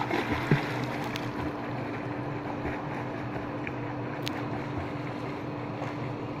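Splashing of a swimmer's kicks and arm strokes in pool water, busiest in the first second or so and thinning out as the swimmer moves away, over a steady low hum.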